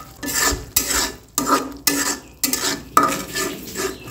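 Metal spatula scraping and stirring onions and spices frying in oil in a metal karahi, about two strokes a second, over a steady sizzle.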